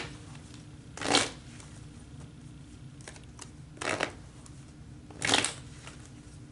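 A tarot deck shuffled by hand in three short bursts: about a second in, near four seconds, and just past five seconds.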